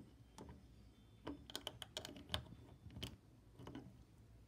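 Plastic LEGO pieces clicking and tapping as a 2x4 plate is fitted and pressed onto a brick build: a scatter of small, sharp, faint clicks, bunched together about halfway through.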